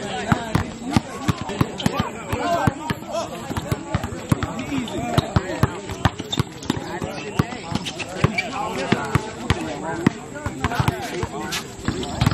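A basketball being dribbled and bouncing on a hard outdoor court, many sharp bounces throughout, with players' voices calling out over it.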